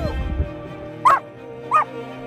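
An Australian shepherd–border collie mix dog gives two short, high-pitched barks about two-thirds of a second apart, over background music.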